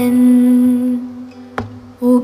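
Female voice holding one long, steady hummed or sung note that fades away in the second half, within an acoustic cover ballad.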